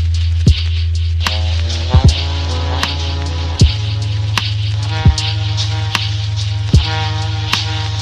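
Lo-fi hip-hop instrumental beat: a deep sustained bass note under a kick drum, evenly ticking hi-hats and soft chords. The bass steps up in pitch about three and a half seconds in.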